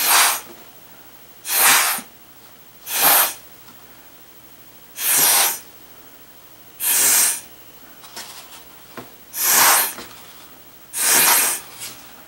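Sharp puffs of breath blown through a drinking straw, pushing wet watercolour paint across paper into streaks. Seven blows, each about half a second long, one to two seconds apart.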